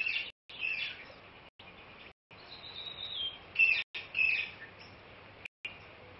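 Birds chirping: several short high calls and one longer whistled note that falls slightly at its end, over a faint steady background hiss.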